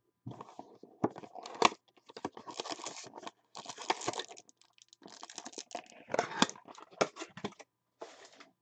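Wrapping of a pack of 2013 Panini Prominence football cards being torn open and crinkled by hand, in a series of short, crackly bursts with sharp snaps.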